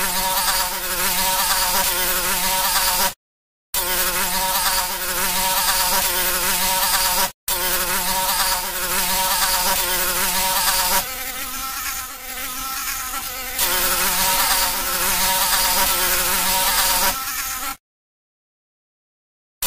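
A fly buzzing in flight: a steady buzz whose pitch wavers slightly. It cuts out abruptly for about half a second around three seconds in and again briefly around seven seconds, drops quieter for a couple of seconds past the middle, and stops just before the end.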